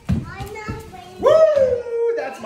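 A child's long, loud, excited call, rising quickly and then sliding slowly down in pitch, starting a little past halfway, preceded by a couple of light knocks.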